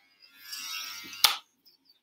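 Fabric rustling close to the microphone for about a second, ending in a single sharp knock.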